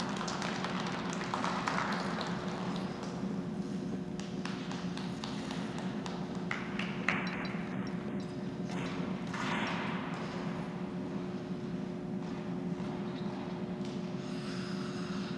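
Ice rink ambience: a steady ventilation hum with one constant tone, with figure skate blades hissing across the ice twice and a few sharp taps and knocks.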